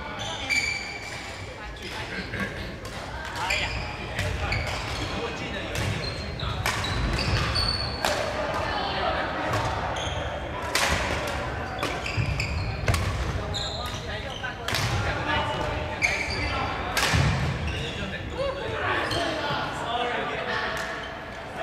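Badminton play in an echoing sports hall: irregular sharp cracks of rackets striking shuttlecocks and footfalls on the wooden court, with short high squeaks of sneakers.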